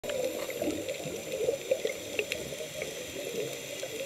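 Underwater bubbling and gurgling with scattered small clicks and pops, heard through an underwater camera.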